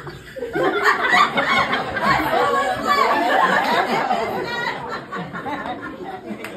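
Small audience laughing, with voices talking over one another, loudest through the middle and dying down toward the end.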